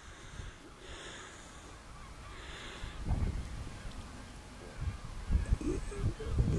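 Faint, distant bird calls over a low outdoor rumble, with a few low bumps near the end.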